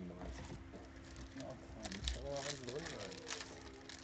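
Soft clicks and light rustles of trading cards and card packs being handled, under quiet, murmured talk and a steady low hum.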